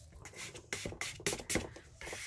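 A plastic card's edge scraping and clicking over wet ink on paper, pushing the alcohol ink inward. A quick run of short scrapes and clicks, mostly in the second half.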